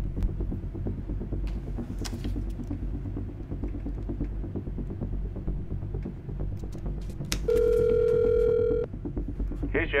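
A telephone ringing tone heard through a handset as a call is placed: one steady electronic tone lasting about a second and a half, starting near the end, over a low steady rumble.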